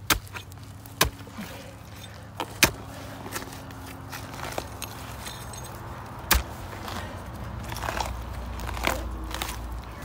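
Hand tool scraping at a dense mat of tree roots and crumbled concrete in a failed septic distribution box, with several sharp knocks spread through it and a steady low hum underneath. The roots have completely blocked the box.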